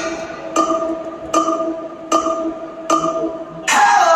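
Electronic count-in played over the arena PA: four evenly spaced click-like strikes, about 0.8 s apart, over a held synth tone. Music with a voice comes in just before the end.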